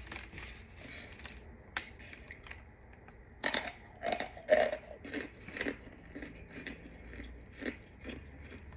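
A packed block of chalky white powder, moulded in a water bottle, crunching and crumbling as gloved hands handle it and break pieces off. There are light crackles at first, then a quick series of crisp crunches around the middle, the loudest about four and a half seconds in.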